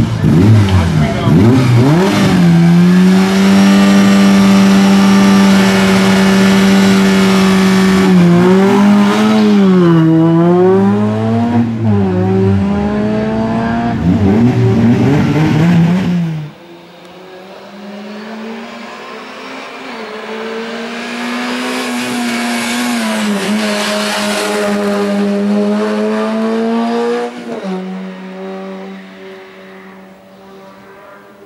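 Peugeot 106 race car's four-cylinder engine revved hard at the launch, then held at high revs with several sweeps down and back up in pitch. About halfway through it drops sharply quieter and is heard from farther off, the note climbing and dipping again before fading near the end.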